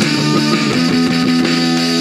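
A loud rock band playing live: an electric guitar holding sustained notes over drums.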